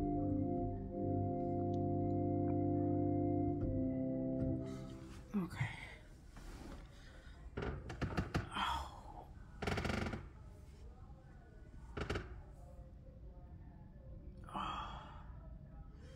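Organ holding a sustained chord for about four and a half seconds, which is then released. After it come a few scattered thumps and several breathy sighs.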